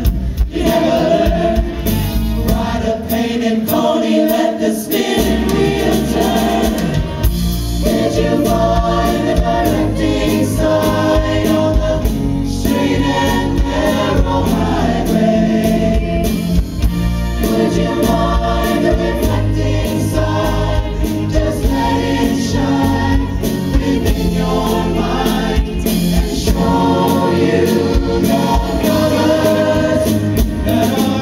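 A show choir singing together through microphones, accompanied by a live band with drums.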